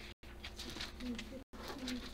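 A faint, distant voice speaking quietly, likely reading a verse aloud. The recording drops out to silence for a split second twice.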